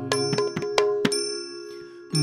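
Instrumental accompaniment of Manipuri dance between sung lines: small hand cymbals struck about six times in the first second, each ringing on, over a held tone, all fading away toward the end.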